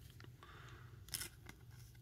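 Faint handling of Panini Prizm baseball cards by hand: a few soft clicks and slides, the clearest a little past a second in, over a low steady room hum.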